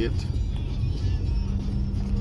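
Car driving along a road, heard from inside the cabin: a steady low rumble of engine and tyre noise, with a steady hum joining about one and a half seconds in.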